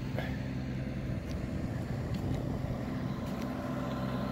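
Heavy work-equipment engine idling steadily with a low, even hum.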